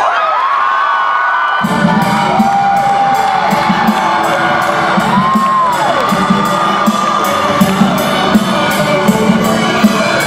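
A crowd of fans cheering and screaming at a winner's announcement. Loud music with a steady beat comes in under two seconds in and plays on under the screams.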